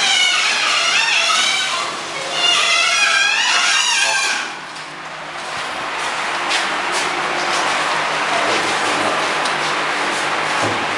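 People talking for the first few seconds. Then, from about five seconds in, an automatic wall plastering machine runs with a steady hiss over a faint low hum.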